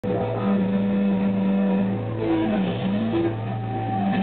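Live rock band's amplified electric guitars and bass holding loud, sustained droning notes, with a few short sliding pitch bends around the middle.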